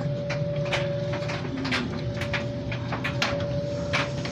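A steady hum with one constant mid-pitched tone, broken by irregular sharp clicks and knocks, some of them close together.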